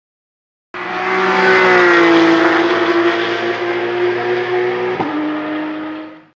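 Race car engine running at high revs, starting suddenly under a second in. Its pitch dips slightly and then holds steady, with a brief click about five seconds in, and it fades away at the end.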